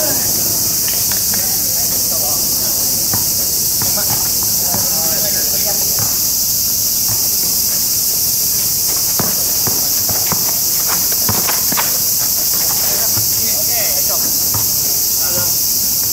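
A loud, steady, high-pitched chorus of cicadas. Underneath it, a basketball bounces on asphalt now and then, with the players' faint voices.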